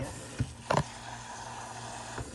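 Kitchen faucet sprayer running a steady hiss of water onto frozen peas, carrots and broccoli in a colander while a hand stirs through them. Two brief knocks come about half a second and three-quarters of a second in.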